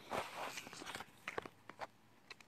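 Faint handling noise: a brief rustle, then a few light clicks and knocks just past the middle, as the handheld recording phone is moved about.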